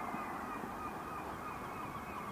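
Steady outdoor background noise with a faint, thin steady tone above it and no distinct events.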